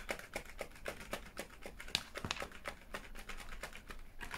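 Irregular light clicks and taps of small makeup items being handled and moved about.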